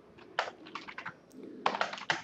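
Computer keyboard typing: irregular key clicks, with a quicker run of keystrokes near the end.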